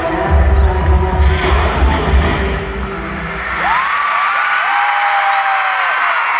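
Live K-pop song with heavy bass beats that ends about halfway through, followed by a large arena crowd screaming and cheering.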